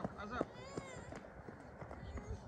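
Faint, indistinct voices of people talking, with a brief sharp knock about half a second in.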